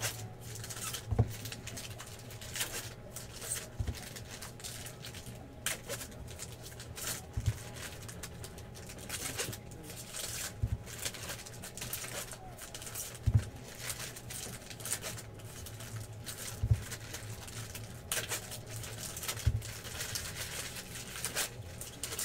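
Plastic trading-card pack wrappers crinkling and tearing as 2015 Bowman Baseball packs are ripped open, with cards rustling as they are handled. A dull knock comes every three seconds or so.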